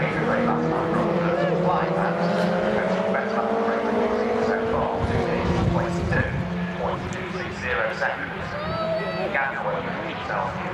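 MG race car engine running hard as it passes, its note rising steadily over several seconds as it accelerates, with more engine sound later as another car comes by.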